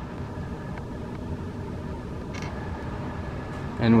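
Carrier 58PAV gas furnace's blower running steadily behind its closed front panel during its 90-second fan-off delay after the burners have shut off.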